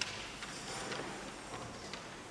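A lull in a large hall: faint room sound with a few light clicks and knocks, the sharpest right at the start and others about half a second and a second in.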